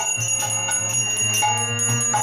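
Hand bell rung continuously during an arati offering, several strokes a second ringing steadily, over the steady drone of a harmonium.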